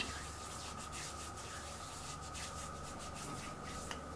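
Palms rubbing over the skin of the face and neck: a faint series of soft brushing strokes.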